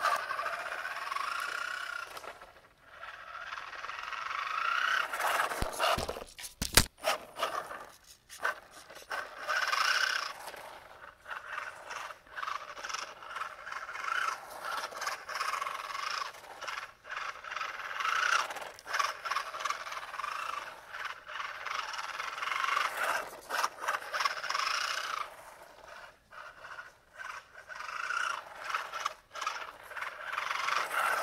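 Brushed 35-turn 540 electric motor, gears and tyres of a small 3D-printed RC car on rough asphalt, whining and rattling, swelling and fading several times as the car speeds up and slows. A few sharp knocks about six to seven seconds in.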